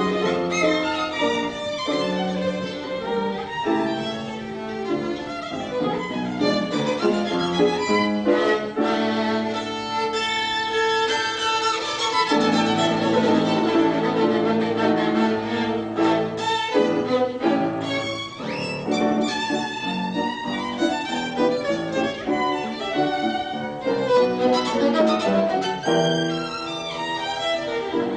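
Violin playing a classical passage with piano accompaniment, moving from quicker figures into long held notes and back, without a break.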